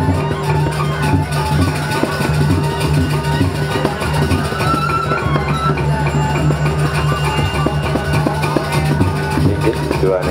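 Balinese gamelan playing the accompaniment for a Barong Ket dance, a dense, steady ensemble of metallic tones over a sustained low band, running without a break.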